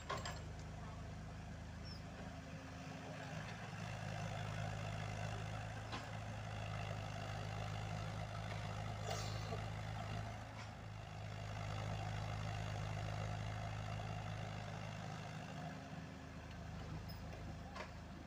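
Komatsu PC78UU mini excavator's diesel engine working under hydraulic load beside an idling dump truck: a steady low engine hum that swells for several seconds in the middle as the machine digs and swings. A few sharp knocks.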